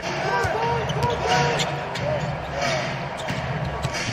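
Basketball being dribbled on a hardwood court, irregular sharp bounces, with faint voices in the arena behind.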